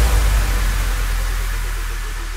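A sustained deep bass rumble under a hiss-like noise wash that slowly fades: a sound-design transition effect between the beat and the start of the song in a DJ remix intro.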